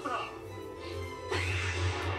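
Audio from the anime episode playing in the background: music under a character's voice. The voice comes in about two-thirds of the way through and grows louder.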